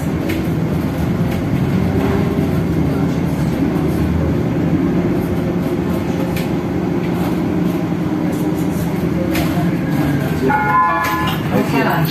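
Steady engine and road noise inside a moving city bus, with light rattles. Near the end a short electronic chime of a few tones sounds over it.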